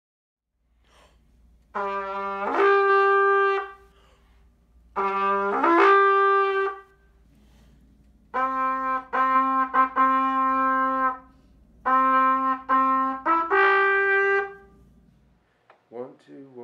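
BFB Tromba horn blown by a child, playing a Roman-style tuba call. A two-note figure leaps from a low note up to a higher held note and is played twice. It is followed by a run of tongued repeated notes on one pitch and a closing phrase that climbs back to the higher note.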